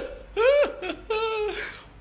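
A man laughing in about four short, high-pitched bursts.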